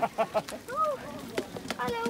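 Voices of a walking group talking among themselves, with a few short sharp clicks in between.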